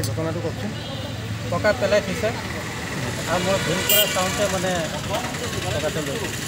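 A man talking in a local language, over the steady low hum of a vehicle engine running.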